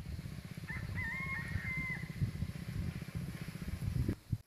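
A rooster crowing once, a call of a little over a second starting just before the first second, over a steady low rumble.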